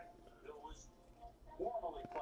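A quiet pause in a man's speech, mostly room tone with faint traces of sound; his voice comes back softly near the end.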